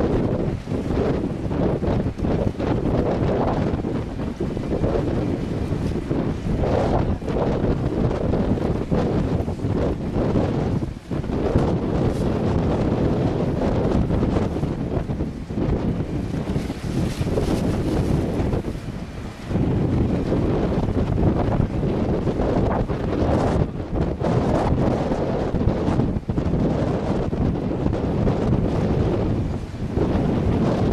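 Wind buffeting the microphone: a loud, dense rumbling noise that gusts unevenly and drops away briefly twice, about a third of the way in and again near two-thirds.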